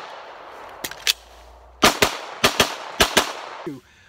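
Glock pistol fired in three quick pairs of shots in the second half, each pair a split second apart. These come after a reload gap that holds two sharp clicks about a second in.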